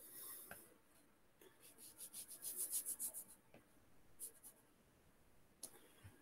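Faint stylus strokes on a tablet's glass screen while digitally painting: a short rub at the start, then a quick run of back-and-forth strokes from about a second and a half in, and a couple of light taps near the end.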